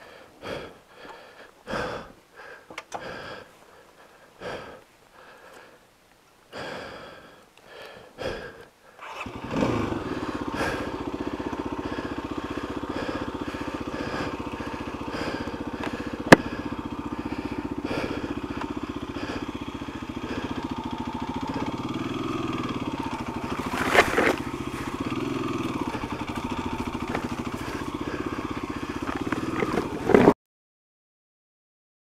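A person breathing hard in short, uneven bursts. About nine seconds in, a dual-sport motorcycle engine starts and runs, with a rise in revs later on and a sharp knock at the very end.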